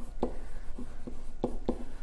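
Stylus writing by hand on a tablet: light taps and scratches of the pen tip, about five in two seconds, over a faint low steady hum.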